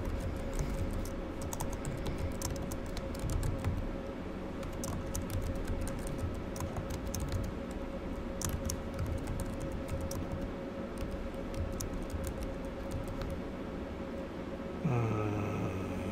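Computer keyboard being typed on in irregular runs of key clicks, over a steady faint background hum.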